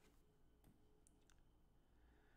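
Near silence with a few faint computer-mouse clicks in the middle, advancing a presentation slide.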